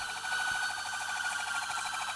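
Police van siren sounding steadily, its pitch drifting only slightly, with a fast warble in the tone.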